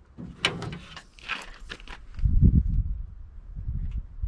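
Short rustling and scraping noises as a hand works grease into a truck door's lock mechanism inside the door cavity, then a low rumbling handling noise in the second half.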